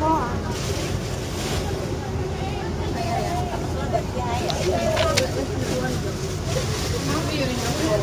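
Busy small restaurant ambience: indistinct voices of other people over a steady low rumble, with a few sharp clicks about five seconds in.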